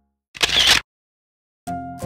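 A camera shutter click sound effect, one short sharp burst about half a second in, set between two stretches of silence. Background music starts again near the end.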